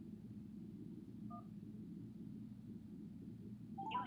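A single short telephone keypad (DTMF) tone, two notes sounding together, about a second in, over a low steady hum. Just before the end the voicemail system's recorded voice starts through the phone's speaker.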